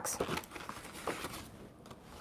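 Faint light taps and rustles of hands handling small clear acetate treat boxes and paper on a cutting mat, a few short clicks in the first second and a half, then quiet.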